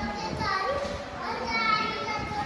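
Children's voices chattering and calling out in a large, echoing hall.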